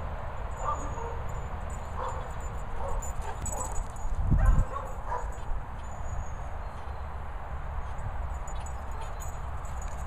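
Dogs barking now and then, short barks at uneven intervals over a low wind rumble on the microphone, with one loud low bump about halfway through.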